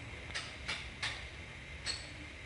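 Faint low background rumble with four soft, brief rustles spread through it.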